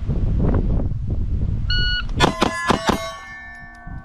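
A quick string of about four pistol shots at steel targets. The struck plates clang and keep ringing as the tone fades. A single plate ring comes just before the string.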